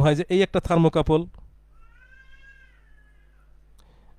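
A man's voice speaks briefly in the first second. About two seconds in comes a faint, high, drawn-out call that bends gently in pitch and lasts about a second.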